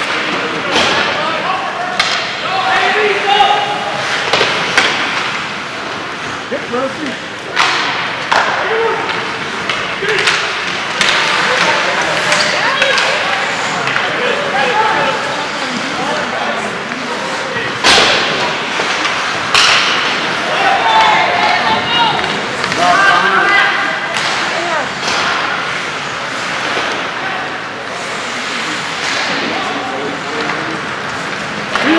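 Ice hockey game sounds: sharp knocks of puck and sticks against the boards, loudest about 8, 18 and 20 seconds in, over a steady hubbub of spectators' voices.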